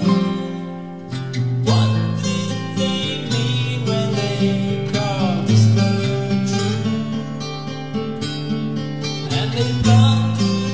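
Song demo: acoustic guitar accompaniment with a voice singing over it.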